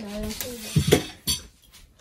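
Ceramic plates, a cup and cutlery on a serving tray clinking and clattering as the tray is handled, with a few sharp clatters about a second in. A voice is heard briefly at the start.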